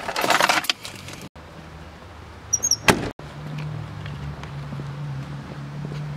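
Inside a moving car: loud rustling of the camera against clothing, then a sharp click just before three seconds in, then the steady low hum of the car driving along the road. The sound cuts off abruptly between these short pieces.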